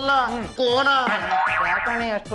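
Comic background music, a TV-serial comedy cue, with sound effects that bend up and down in pitch.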